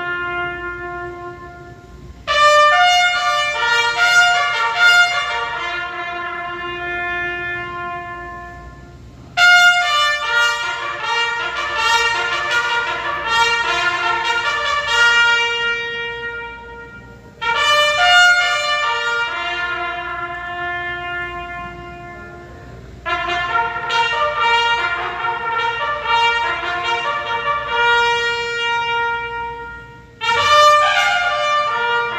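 Solo trumpet playing slow phrases, four of them, each starting loud with a run of notes and fading through long held notes.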